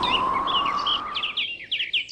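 Small birds chirping in quick short calls, several a second, as outdoor ambience. At first they sit over a fading whoosh with a faint rising tone, which dies away a little past halfway.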